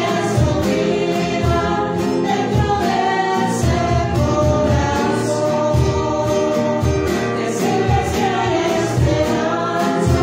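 A choir singing a Christian hymn with musical accompaniment, sustained throughout with a low pulse about once a second.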